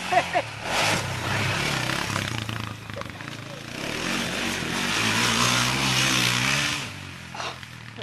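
Sport quad (ATV) engine revving hard as the quad rides over a dirt jump and off along the track, loud for a couple of seconds, easing, then loud again from about four to seven seconds in, its pitch rising and falling.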